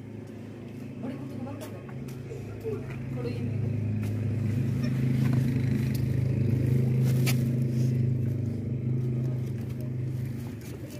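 A motor vehicle's engine running steadily with a low hum, growing louder from about three seconds in and easing off near the end, with a single sharp click about seven seconds in.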